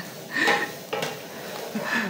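A short clatter of kitchenware, dishes and utensils knocking and scraping, about half a second in, with a smaller knock near one second.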